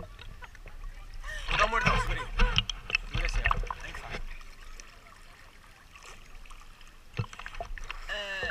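Indistinct voices calling out from about a second in for a few seconds, then a quieter stretch with scattered knocks and clicks.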